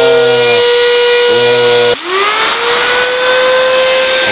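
Electric die grinder with a carbide rotary burr, spinning up to a steady high whine, cutting off about two seconds in and spinning up again. The two runs are the same grinder with a bent burr and with a new burr, played for comparison.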